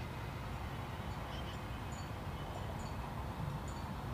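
Outdoor ambience: a steady low rumble with a few faint, short, high tinkling tones scattered through the middle and latter part.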